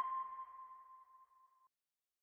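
The fading tail of a sonar-style ping sound effect in a logo sting: one ringing tone, struck just before, dying away and gone by about a second and a half in.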